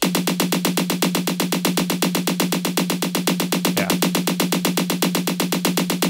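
A sampled snare drum played from MIDI in a fast, even run of about eight hits a second, each hit at a different loudness because the note velocities have been randomized between 60 and 100, which makes the differences drastic.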